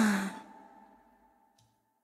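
The song's last sung note slides down in pitch and breaks off within the first half-second. A few lingering notes of the accompaniment then ring on faintly and fade out, with a faint click near the end.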